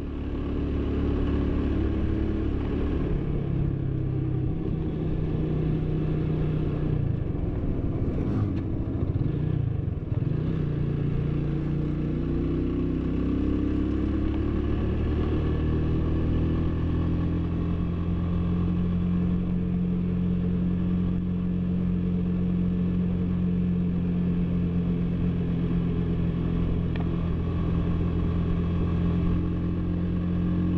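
Cafe racer motorcycle engine running while riding. Its pitch drops about eight to ten seconds in, climbs again, then holds steady for the rest.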